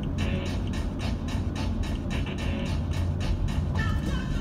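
Music with a steady, quick beat playing on a car radio inside the cabin, over a low steady road rumble.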